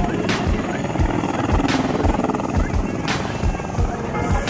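Helicopter with its rotor turning, a steady, regular low beat of the blades, with crowd voices around it.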